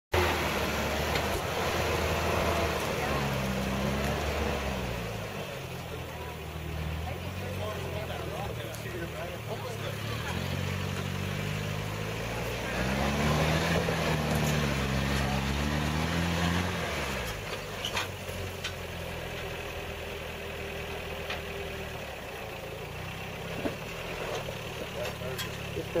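The engine of a lifted 4x4 SUV working as it crawls up a steep rock ledge. Revs climb twice, briefly a few seconds in and harder around the middle, then drop back to a low idle about two-thirds of the way through.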